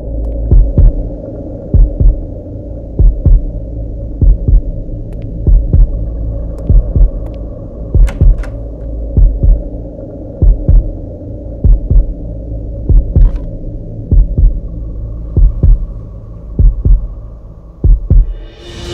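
Heartbeat sound effect in a film score: loud paired low thumps, a little under one beat a second, over a steady low drone.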